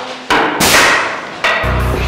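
Three loud hits of sticks striking in a staged fight, the middle one with a long noisy crash after it. Heavy rock music with a deep bass beat comes in about one and a half seconds in.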